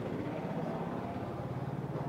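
A vehicle engine running steadily: a low, even hum.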